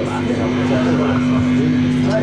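Hardcore punk band playing live at loud volume: a distorted electric guitar chord held steady, with voices shouting or singing over it.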